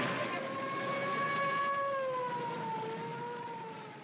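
A siren sounding one long held tone that slides slowly down in pitch over a background of noise, fading away near the end.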